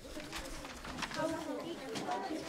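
Indistinct chatter of children's voices, growing a little louder about a second in.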